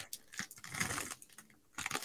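A few faint, scattered clicks and taps.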